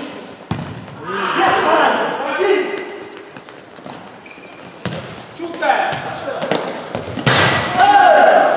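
Players shouting to each other during indoor futsal play, with the ball's kicks and bounces knocking off the hard court floor in a reverberant sports hall. The shouting is loudest near the end.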